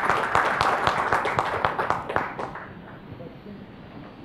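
Audience applauding; the clapping thins out and stops about two and a half seconds in.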